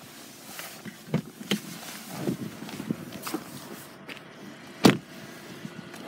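Someone getting out of a Mercedes E-Class saloon: a few clicks from the door handle and latch amid rustling, then the car door shut with a single loud thud just before the five-second mark.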